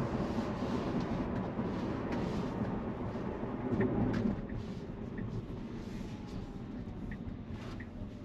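Road and tyre noise inside the cabin of a Tesla Model Y electric car as it rolls and slows: a steady low rumble with a slight swell about four seconds in, and a faint whine that falls slowly in pitch.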